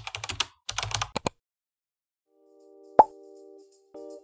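Typewriter-style keyboard typing sound effect, a quick run of clicks over the first second or so. About three seconds in, a sharp pluck opens a held chord as music starts.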